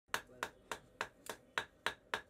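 Blacksmith's hand hammer striking metal on an anvil, seven quick, evenly spaced sharp blows at about three and a half a second, beginning just after the start.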